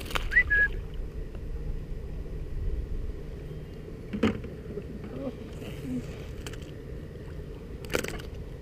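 Low wind and handling rumble on a body-worn mic that fades after the first second, then a faint steady background. A short high chirp comes about half a second in, and a single sharp knock about four seconds in.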